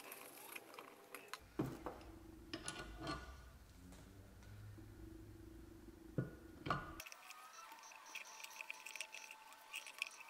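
A few faint metallic clicks and taps as a valve spring compressor is fitted against a valve on an aluminium cylinder head, the sharpest two knocks a little after six seconds in.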